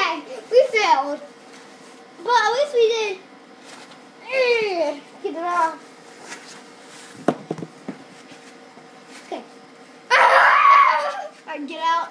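Young children's wordless vocal sounds (cries, squeals and shouts) in short bouts. A few light knocks come in the middle, and a loud shout comes near the end.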